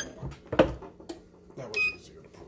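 Sublimation mug press being worked: a sharp clunk about half a second in as the handle and clamp move, then a short electronic beep from the press near the end.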